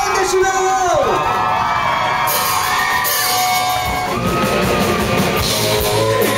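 Live rock band playing loud, drums and cymbals under arching, falling pitch slides, with whoops from the crowd; the bass and full band come in heavier about four seconds in.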